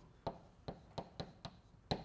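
Chalk tapping and knocking against a blackboard while drawing: about six short, sharp taps at an uneven pace, the loudest near the end.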